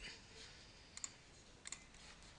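Two faint clicks of a computer mouse, one about a second in and another shortly after, over near silence.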